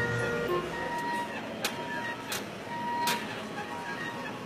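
Elliptical trainer being worked by a child: a regular sharp click with a short high tone about every three-quarters of a second, one per stride.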